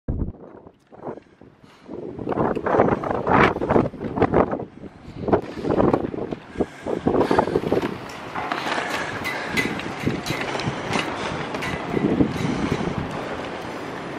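Strong wind buffeting the microphone in irregular gusts, settling into a steadier rush about eight seconds in.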